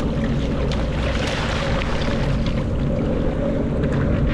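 Sea-Doo Fish Pro jet ski engine idling with a steady hum, under water sloshing and splashing around the hull.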